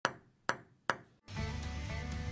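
Three sharp, ringing pings about half a second apart, each dying away quickly. Background music with a bass line starts just over a second in.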